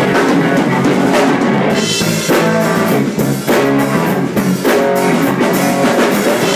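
A rock trio playing live together: electric guitar, electric bass and drum kit, with regular drum and cymbal hits under the guitar and bass lines. Instrumental, with no singing.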